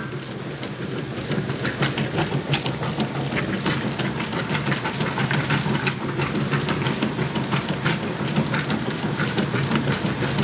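Whirlpool Ultimate Care II top-load washing machine agitating a load of clothes in water: a steady motor hum under constant sloshing and splashing as the agitator swings back and forth. The agitator and auger are working as they should after the repair, driving the clothes down into the water.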